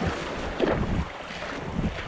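Small waves washing up on a sandy beach, with wind gusting on the microphone.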